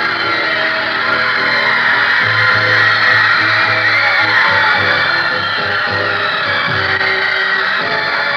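Live guitar-band music, with electric guitar and bass, and a crowd of fans screaming over it.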